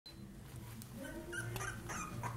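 Puppies whimpering and giving short high yips, more of them in the second half.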